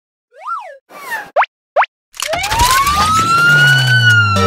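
Cartoon sound effects: a quick rise-and-fall whistle, then two short upward zips. About two seconds in comes a loud noisy swoosh carrying a siren-like wail that rises slowly until near the end.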